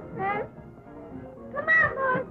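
A young child's high voice in short, sliding syllables: two just after the start, then a quieter stretch, then a louder drawn-out one near the end.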